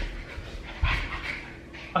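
Sable Pomeranian puppy panting during rough play, with short scuffs and a couple of soft thumps, about a second in.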